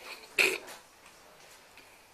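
A single short, loud vocal burst from a person, about half a second in, over faint room noise.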